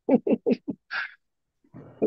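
A person laughing in a quick run of short 'ha-ha' bursts, about five a second, that stops under a second in, followed by a softer breathy exhale.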